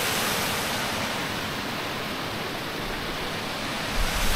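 Water rushing steadily over a small dam's outflow into a rocky creek, a continuous even hiss with a brief low rumble near the end.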